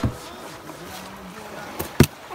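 Faint murmur of distant voices over a low background hiss, with a single knock near the end.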